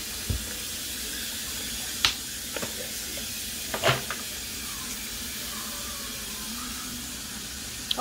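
Steady hiss of a kitchen tap running hot water, with three short knocks and scrapes as a metal ice cream scoop digs into a plastic tub of vanilla ice cream.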